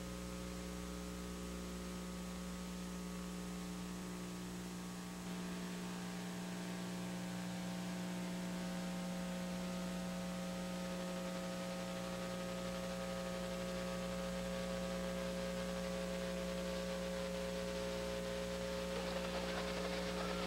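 Steady electrical hum made of several unchanging tones over a faint hiss, stepping up slightly in level about five seconds in.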